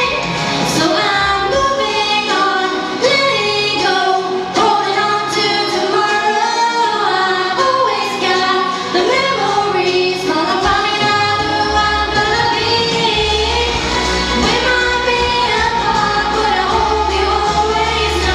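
A young woman singing a solo melody into a handheld microphone, amplified over the hall's sound system, with instrumental accompaniment; a steady bass line comes in about two-thirds of the way through.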